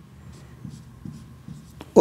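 Faint scratching of writing strokes on a writing surface, with a sharp click near the end.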